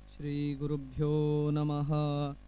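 A man chanting a Sanskrit prayer in long held notes on a nearly steady pitch, with a brief break about a second in.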